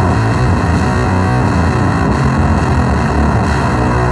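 Electric guitar played through a Vox Tone Garage Trike Fuzz pedal and heard from the amplifier's speaker: fuzz-distorted notes played continuously at a steady, loud level.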